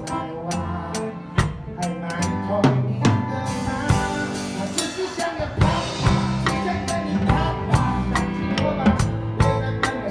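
Rock drum kit played along to a recorded backing song, with snare, bass drum, tom and cymbal hits keeping a steady beat, struck with SparxStix LED drumsticks.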